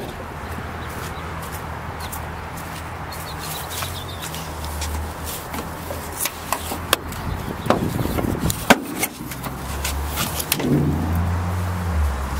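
Clicks and knocks of a Mercedes-Benz hood being unlatched and raised, mostly in the second half, over a steady low hum.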